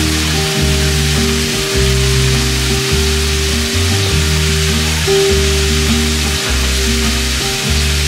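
Sliced meat and pre-cut vegetables sizzling in a frying pan as they are stir-fried, under background music with a steady bass line.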